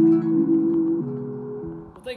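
Instrumental background music with held notes, fading out toward the end.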